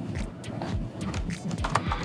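Laptop keyboard being typed on: a quick, uneven run of key clicks as a word is entered.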